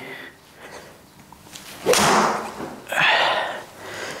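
A golf swing off a hitting mat: the club strikes the ball about two seconds in, a sudden hit that fades over about half a second, followed about a second later by a second, shorter burst of noise.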